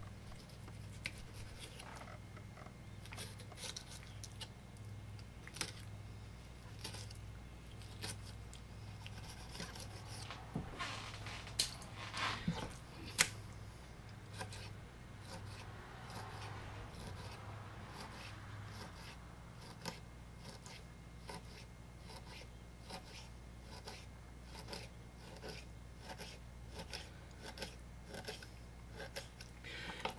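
Knife scoring a raw sucker fillet on a wooden cutting board: a run of short, crisp clicks, about two a second and louder around the middle, as the blade cuts crosswise through the fine pin bones down to the skin. A faint steady low hum sits underneath.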